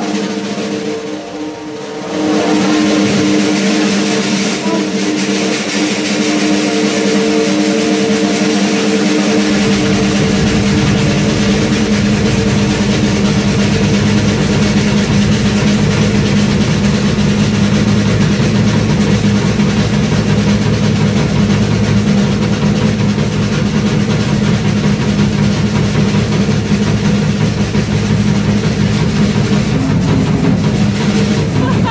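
Live band music: a drum kit played busily under sustained keyboard chords, with a low bass part coming in about nine and a half seconds in.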